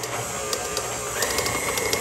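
KitchenAid Pro 500 stand mixer running, its flat beater turning thick, sticky dough in the steel bowl, with irregular ticking. About a second in a higher steady whine comes in and holds as the speed is turned up.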